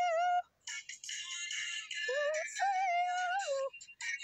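A high voice singing vocal warm-up notes, played back from a phone voice recording. There is a short held note at the start, then after a brief gap a fuller stretch of music. From about two seconds in come held notes that slide up into pitch and waver slightly before dropping off near the end.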